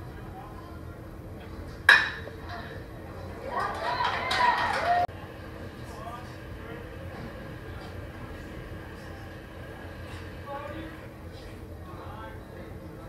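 Metal baseball bat striking a pitched ball with a sharp ping about two seconds in, followed by spectators cheering and shouting for about a second and a half, cut off abruptly. Faint crowd chatter runs under it.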